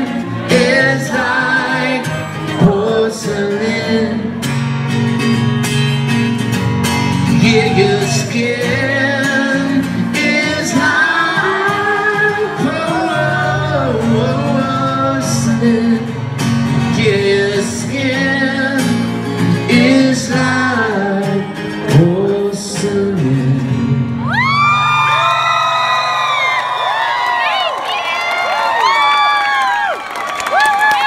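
Live solo acoustic guitar and male lead vocal in a large hall, with the audience singing along. About 24 seconds in, the guitar stops and the crowd cheers and whoops as the song ends.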